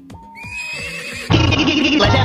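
Music remix backing: a held, slightly rising tone, then a loud sampled sound with a fast wavering, warbling pitch cuts in suddenly about a second and a half in.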